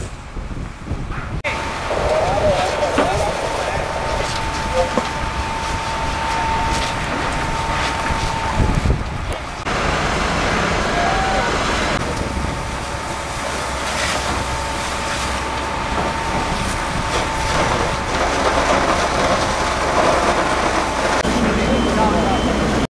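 Machinery running at a fire scene, with a steady high whine over a dense rush of noise and indistinct voices. The sound changes abruptly a few times.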